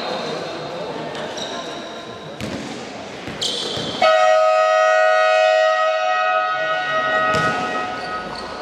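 Basketball bouncing on a hardwood court in a large hall, then a loud, steady scoreboard buzzer starts abruptly about halfway through and sounds for about three seconds.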